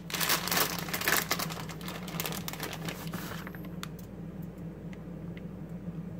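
Plastic bag of shredded mozzarella crinkling as it is handled and opened, for about the first three seconds. After that it is quieter, with a few light ticks.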